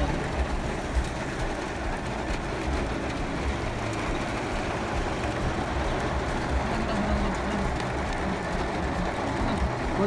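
Steady rumble of a moving vehicle heard from inside its cabin: engine and tyre noise on a wet road.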